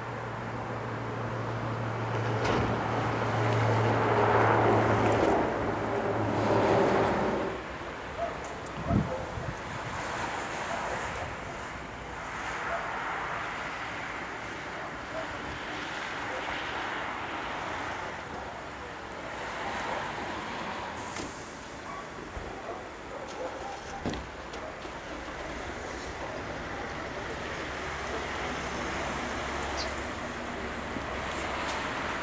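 Boeing 777 jet engines running at taxi power, a steady distant rush with wind buffeting the microphone. A low steady hum runs under it for the first seven seconds or so, then drops away.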